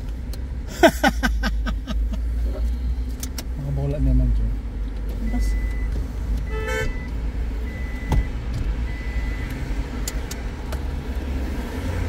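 Car engine idling while the car stands still, heard from inside the cabin as a steady low rumble, with a short laugh about a second in.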